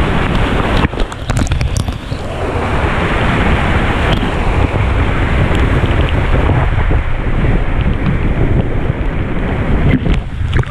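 Waterfall pouring down right onto the camera, a loud steady rush of falling water and splashing spray that grows fuller about two seconds in.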